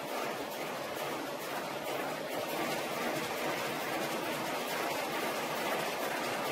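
Industrial egg washing machine running: a steady noise of machinery and water as its elevator conveyor carries eggs up from the loading tank.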